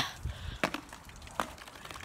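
Two faint knocks, one just over half a second in and another near a second and a half: a tossed plastic water bottle striking the roof and a rooftop vent.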